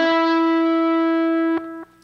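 Electric guitar playing a single sustained note, the 5th fret of the B string (E), held at an even level for about a second and a half and then dropping away sharply.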